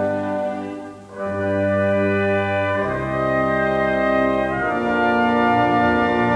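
Symphony orchestra with prominent brass playing sustained chords. The sound dips briefly about a second in, then new held chords enter, changing twice.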